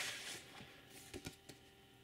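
Faint rustle of a paper record inner sleeve being handled as a vinyl LP is lifted out of its gatefold jacket, with a few soft clicks around the middle.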